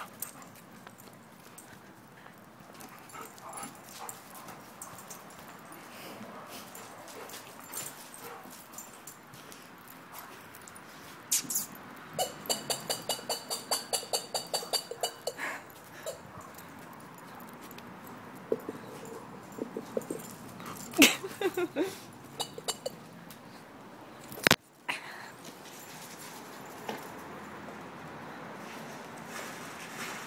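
A dog's squeaky toy being chewed by a long-haired German Shepherd. It squeaks in a quick run of about four squeaks a second for a few seconds, then a few more short squeaky sounds follow later.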